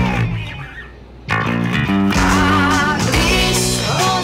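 Fender Precision-style electric bass played along with a rock recording: a held chord dies away over the first second, then the full band with bass and guitars comes back in sharply and plays on.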